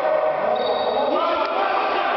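Indistinct voices echoing in a large indoor sports hall during a futsal game, at a steady level.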